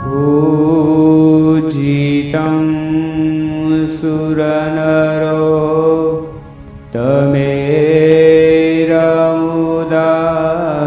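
A man's voice chanting a Hindu devotional dhun into a microphone in long held, melodic notes. One phrase breaks off about six seconds in, and the next starts a second later.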